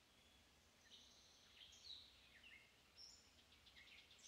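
Faint bird chirps and short falling whistles, starting about a second in, with a quick trill near the end.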